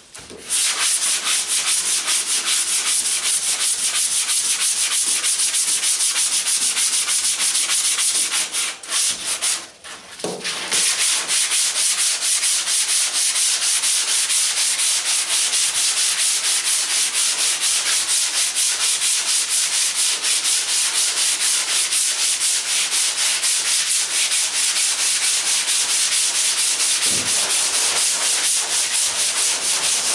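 A hand sanding block is rubbed back and forth in quick, even strokes over FeatherFill G2 polyester primer on a car body panel: a steady scraping. The strokes stop briefly about nine seconds in, then go on.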